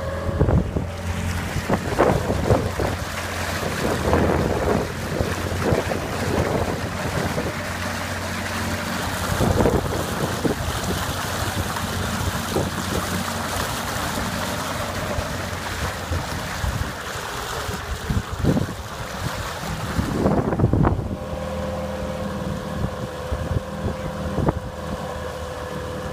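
Tohatsu 9.8 two-stroke outboard motor running steadily under way, with water rushing past the inflatable dinghy's hull and wind buffeting the microphone in irregular thumps. About twenty seconds in, the wind noise falls away and the outboard's steady tone comes through clearly.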